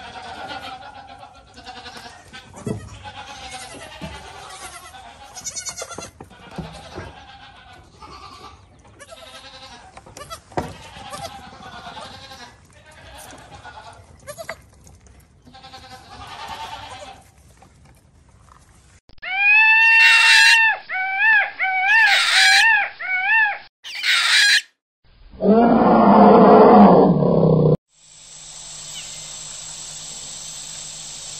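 A herd of goats bleating, many overlapping calls, for most of the stretch. Later come a run of loud, high calls that rise and fall, then a loud low, rough call lasting about three seconds, and a steady hiss near the end.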